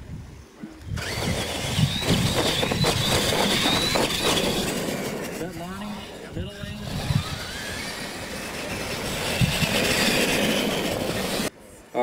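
Radio-controlled Tamiya Clod Buster–style monster trucks launching from a standing start about a second in and racing over dirt: electric motors whining with rising pitch and tyres churning the loose surface. Voices are heard briefly partway through.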